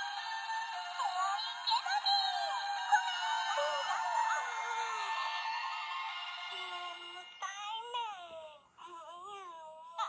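Talking Kome-Kome plush toy playing a tinny electronic jingle through its small speaker, with a high cartoon voice singing over it. After about seven seconds the music gives way to short, high-pitched spoken character phrases.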